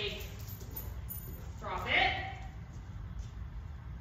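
A woman's short vocal exclamation about two seconds in, over a steady low room hum.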